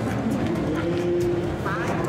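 Steady hubbub of many indistinct voices in a busy shopping centre, with no single clear speaker.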